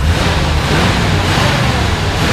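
Ford 360 cubic-inch FE V8 in a 1973 Ford F100 pickup being revved, the loud run coming up sharply at the start and held.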